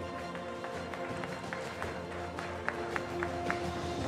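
Background music of held, sustained notes, with a few scattered, isolated handclaps in the middle.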